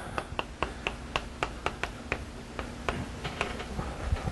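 Chalk tapping and clicking on a blackboard as a formula is written out: a quick, irregular run of sharp taps, about five a second.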